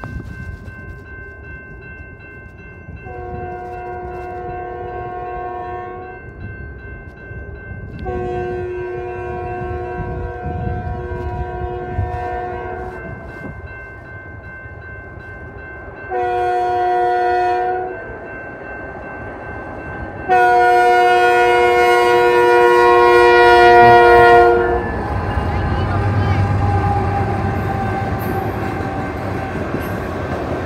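CP 8207, a diesel freight locomotive, sounds its air horn in the grade-crossing pattern: two long blasts, a short one, then a final long, loudest blast. A crossing bell rings steadily underneath. After the last blast the locomotive and freight cars rumble past.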